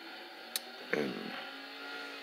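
Quiet room tone in a small workshop, with one sharp click about half a second in and a faint steady hum underneath.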